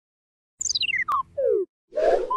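Electronic logo-sting sound effect: a quick run of short blips stepping down in pitch from very high to low over about a second, with a sharp click partway through, then the start of a noisy whoosh right at the end.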